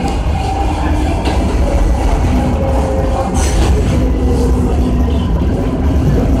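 R143 subway car running through a tunnel, heard from inside the car: a loud, steady rumble with faint whining tones over it, and a brief hiss about three and a half seconds in.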